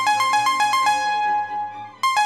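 A loud electronic chime melody of short, quick alternating high notes starts suddenly, plays its short phrase and then starts again about two seconds later, over quieter background music.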